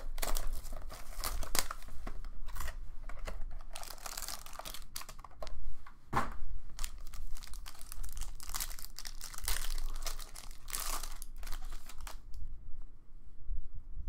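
Wrapping on a Panini Obsidian football card box being torn open and crinkled by hand, in irregular rustles that stop about twelve seconds in.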